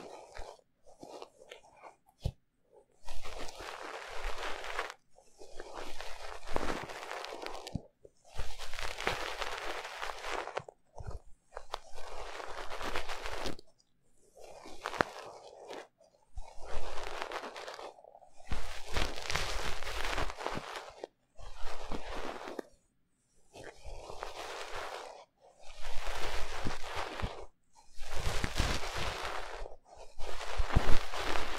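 Fluffy ear picks rubbing and scratching against the ear of a 3Dio binaural microphone, crunchy and close. After a quieter opening of light clicks, it comes in about a dozen strokes of one to three seconds each, with short pauses between.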